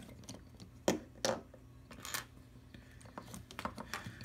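Hard plastic clicks and taps from a Transformers Power of the Primes Swoop action figure being handled, its parts shifted by hand. A few separate louder clicks about a second and two seconds in, then a run of small rapid clicks near the end.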